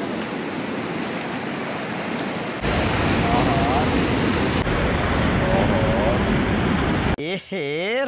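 Steady rush of a fast, churning mountain river, stepping up louder a little under three seconds in. Near the end it cuts to a man speaking.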